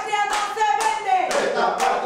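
A group of people clapping in unison in a steady rhythm, a bit over two claps a second, with voices singing along on a held note.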